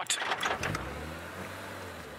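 Safari vehicle's engine running as it drives along a sandy track, with a few short knocks and rattles in the first half-second.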